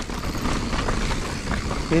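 A full-suspension 29er mountain bike (Giant Reign) rolling down a dirt singletrack: a steady rush of tyre and riding noise with a few light knocks from the bike over the rough ground.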